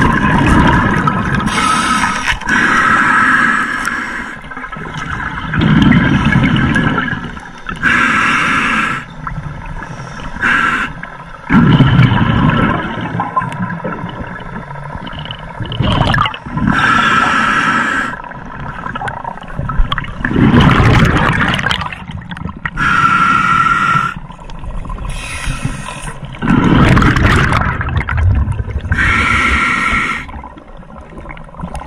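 Scuba diver breathing through a regulator underwater: hissing, slightly whistling inhalations alternate with rumbling, bubbling exhalations, a breath every few seconds.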